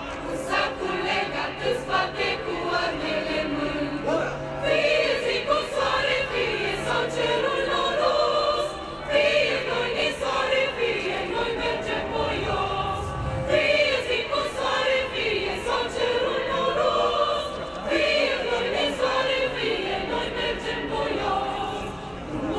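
Mixed choir of young women and men singing together in several parts, a continuous choral piece with no pauses.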